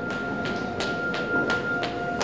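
Background music: a held high note over an even beat of sharp ticks, about three a second.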